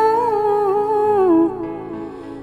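A female voice in a Hindu devotional chalisa holds one long vocal note over a steady low accompaniment. The note sags in pitch and fades out about three-quarters of the way through, leaving the quieter backing.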